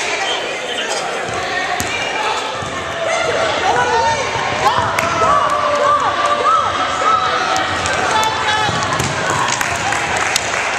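Basketballs bouncing on a hardwood gym floor, with a steady din of voices in the hall and short high calls or squeaks in the middle stretch.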